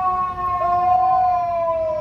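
FDNY fire truck siren passing close, a loud sustained wail slowly falling in pitch.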